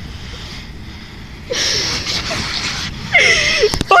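Human breathy vocal sounds: a breathy exhalation about halfway through, then a short voiced cry near the end, over low rumble on the microphone.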